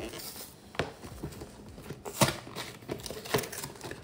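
Cardboard gingerbread-house kit box being handled and opened: rustling of the carton and its flaps, with a few sharp knocks, the loudest about two seconds in.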